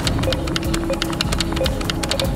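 Background music with held synth tones, overlaid with rapid, irregular electronic clicks and ticks.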